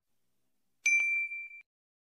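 A single bright notification-bell ding sound effect, the tone that goes with tapping a YouTube subscribe bell. It comes in suddenly about a second in, holds one steady high note for under a second with a faint click just after it starts, then stops.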